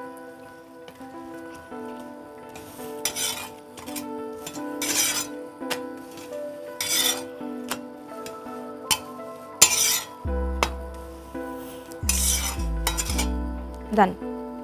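Metal spatula scraping and pressing a chapati on a flat tawa, in short strokes about every two seconds, over background music.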